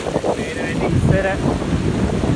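Strong wind buffeting the microphone over waves washing against a seawall, with two short pitched sounds about half a second and a second in.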